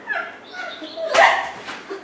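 A girl's pretend crying: short wailing sobs, the loudest about a second in.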